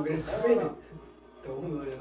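Men's voices talking, with a short lull about a second in.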